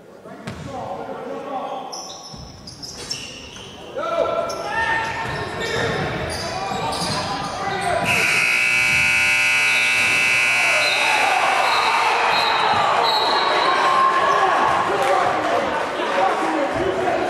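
Basketball bouncing and voices echoing in a gymnasium. About halfway through, a loud scoreboard buzzer sounds steadily for about three seconds.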